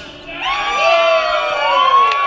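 Audience whooping and cheering as a song ends: several long, overlapping "woo" calls that glide up and down in pitch, starting about half a second in.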